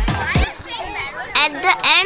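Children's voices chattering and calling out, over background music whose bass beat, about two a second, stops about half a second in.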